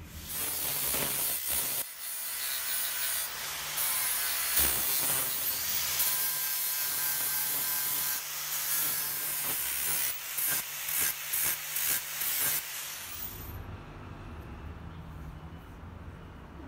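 Angle grinder with an abrasive disc grinding the edge of a small forge-welded tool-steel billet: a steady rasp over the motor's whine. It breaks into short bursts of contact near the end, then stops.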